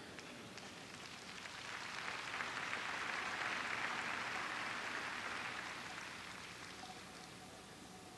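A congregation applauding: a faint wash of clapping that swells for a couple of seconds, then dies away.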